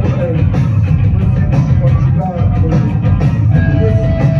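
Sludge-metal band playing live at full volume: heavily distorted bass and guitar over a steady drum beat.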